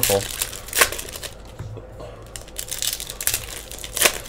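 Foil wrapper of a 2016 Panini Donruss soccer card pack crinkling and tearing as it is pulled open by hand, with a sharper crackle about a second in.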